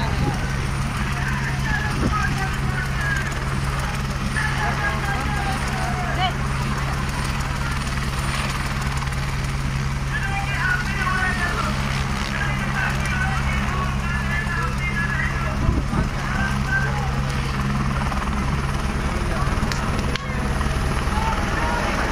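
Light helicopter running on the ground with a steady low hum, lifting off near the end. Crowd voices and shouts are heard over it.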